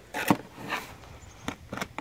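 A few light knocks and short scrapes as a gloved hand digs into mud and shingle grit packed in a rain gutter.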